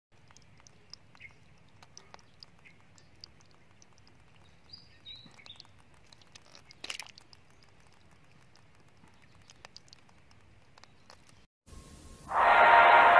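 Faint outdoor ambience with scattered soft ticks and a few short high bird chirps about five seconds in, and one brief louder noise just before seven seconds. The sound cuts off abruptly near the end.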